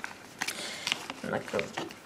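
A pause in speech filled with a few faint, short clicks and rustles, with one short spoken word about a second and a half in.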